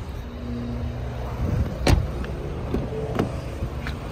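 Steady low vehicle rumble with a few sharp clicks, the loudest about two seconds in and smaller ones near three seconds.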